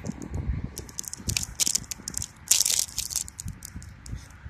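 Crinkling and crackling of a thin plastic blind-bag toy packet being torn open and handled by a gloved hand, in quick irregular bursts, loudest about two and a half seconds in.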